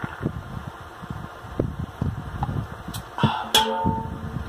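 Gulps of soda drunk from an aluminium can: a run of soft swallowing thumps, then two sharp clicks and a short steady hum near the end.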